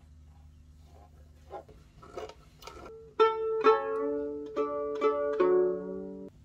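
The open strings of a freshly strung violin plucked several times, each note starting sharply and ringing on, the lowest string sounding near the end. Before the plucking there are a few seconds of faint clicks from handling the instrument.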